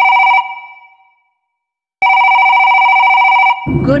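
Telephone ringing. The tail of one ring dies away, and after a pause of about a second a second ring of about a second and a half cuts off sharply as the call is answered.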